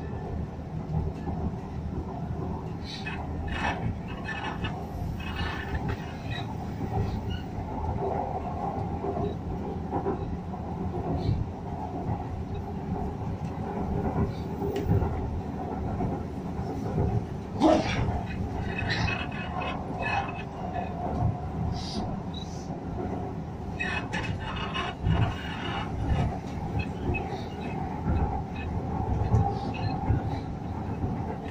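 Hyderabad Metro electric train running along the elevated line, heard from inside the carriage: a steady rumble of wheels and motors with scattered light clicks and one sharper click about 18 seconds in.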